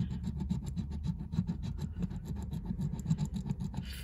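A handheld scratcher disc scraping the coating off a scratch-off lottery ticket in rapid repeated strokes, several a second.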